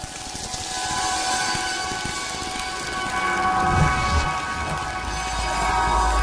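Sound-design bed of an animated station ident: a rising hiss with several held shimmering tones, and a deep rumble that swells up from about halfway through.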